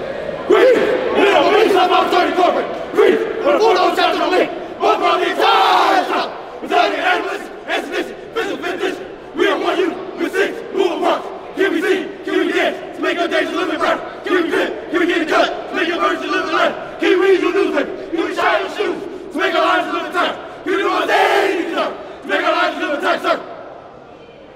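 A group of men chanting loudly in unison in short, rhythmic shouted phrases, stopping just before the end.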